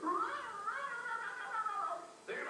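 A single long, high, wavering yowl like a cat's, rising over the first half second and then held for nearly two seconds before stopping, heard from a film's soundtrack over theatre speakers.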